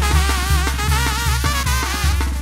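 A live brass band playing an instrumental passage: wavering horn lines over a strong sousaphone bass line and steady drum and percussion strokes.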